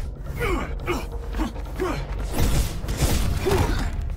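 Fight sound effects from an animated martial-arts film: a quick run of hits, blocks and whooshes, with short pitched sounds about every half second.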